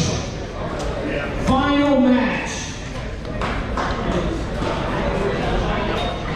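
Voices and chatter echoing in a large gym hall, with one voice calling out about one and a half seconds in.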